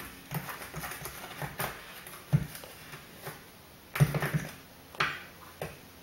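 Stirring a baking soda and vinegar volcano mixture on a plate: soft irregular taps and scrapes, with a few sharper knocks about two and a half, four and five seconds in.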